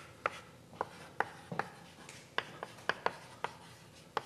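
Chalk writing on a blackboard: about ten sharp, irregularly spaced taps and short scrapes as a sentence is written out.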